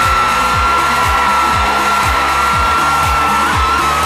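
Loud celebration music with a driving electronic beat of about two deep kicks a second and one long held high tone, over a steady wash of noise.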